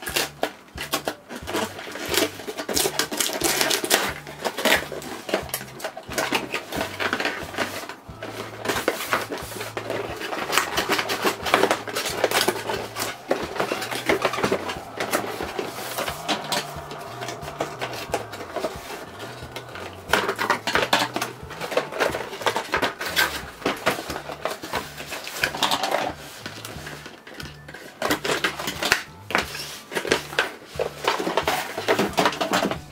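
Cardboard toy box being opened by hand and a plastic toy castle playset pulled out: a continuous run of rustling, scraping, tearing and light knocks, over quiet background music.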